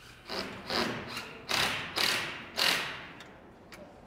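A run of metal clanks and knocks, five loud ones in under three seconds and then a few light ticks, from hands and tools working inside the metal robotic understructure of an animatronic sculpture.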